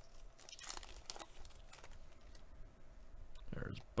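Foil wrapper of a Panini Mosaic baseball card pack crinkling and tearing as it is pulled open by hand, in faint scattered crackles.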